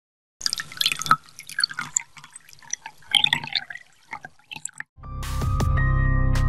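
Drops of water falling into water, irregular drips and plinks for about four and a half seconds. Music starts about five seconds in.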